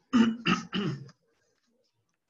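A man clearing his throat: three quick, loud pushes within about a second.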